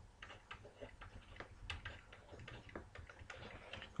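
Faint, irregular ticks and taps of a stylus on a pen tablet as an equation is handwritten.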